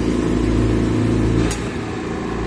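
Steady machine hum from the oxygen-concentrator and air-compressor setup, with a sharp click about one and a half seconds in as the compressor kicks back on after the tank pressure drops.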